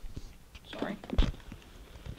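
Handling knocks and rustling as a powered dynamic arm support is worked off its seat-rail mount on a chair, with one firmer knock about a second in. A faint low voice is heard under it.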